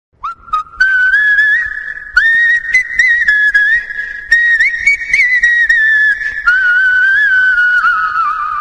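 A whistled tune, one wavering melody line in several short phrases, with sharp clicks where some phrases begin.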